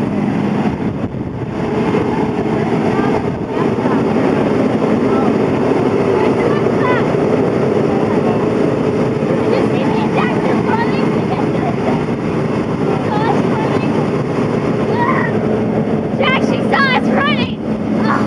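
School bus engine running at idle, a steady drone with a constant hum. Children's high voices break in over it a few times, most near the end.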